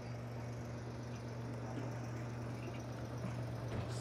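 A steady low hum under open-air background noise.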